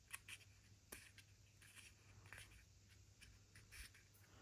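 Near silence, with a few faint, scattered rustles and clicks of thin card being handled and folded by hand.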